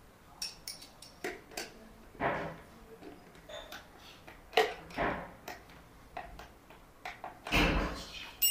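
Scattered metallic clicks and knocks of pliers and a spanner working a cable clamp on a lead-acid battery terminal, with a heavier thump near the end.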